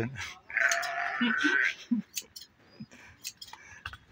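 A goat bleats once, a call of about a second starting about half a second in, followed by a few faint scissor snips as its long hair is trimmed.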